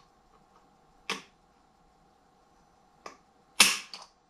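Mossberg MC1 pistol's trigger dry-firing under a trigger pull gauge: a sharp click as the trigger breaks near the end, the loudest sound, with a few fainter clicks of the gun and gauge before it.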